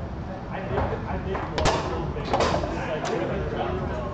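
Foosball table in play: three sharp clacks of the ball and plastic men being struck, the first about a second and a half in and two more over the next second and a half, over steady crowd chatter.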